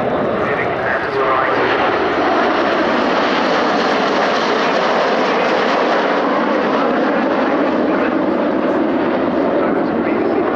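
Steady jet noise from a formation of Red Arrows BAE Hawk T1 jets, each powered by a single Adour turbofan, flying a smoke-on display pass.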